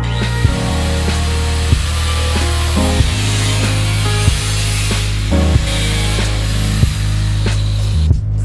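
Angle grinder with a cutting disc cutting a section out of a car's sheet-steel rear wheel arch, a steady grinding that stops abruptly at the end. Background music with a steady beat plays underneath.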